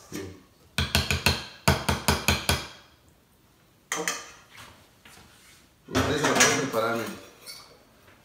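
A stainless steel mixing bowl being knocked and scraped with a utensil to empty guacamole out of it: two quick runs of sharp metallic knocks, about a dozen in two seconds, then one more knock a little later. Near the end a person's voice is heard briefly.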